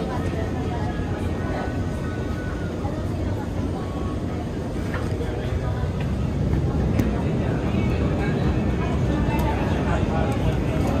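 Interior running noise of an Alstom Movia R151 metro train travelling between stations: a steady rumble of wheels on rail and traction equipment, growing a little louder about halfway through.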